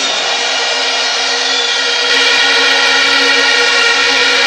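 A large outdoor crowd cheering in a steady, loud roar that swells slightly about halfway through, answering a pause in a speech.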